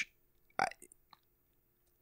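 A single short mouth or throat noise from a host at the microphone about half a second in, followed by a couple of faint ticks; the rest is near silence.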